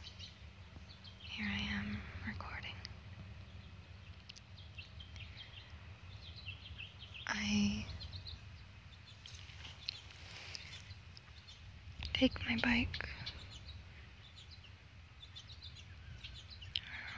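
Wind buffeting the microphone, a steady low rumble, with faint bird chirps over it.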